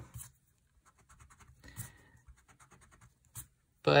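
Dixon Ticonderoga pencil's pink rubber eraser rubbing on paper in a run of short, quiet scratchy strokes.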